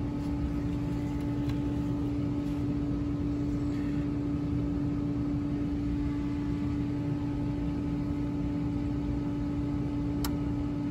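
Pool equipment motor running steadily, a constant hum with one strong unchanging tone over a low rumble.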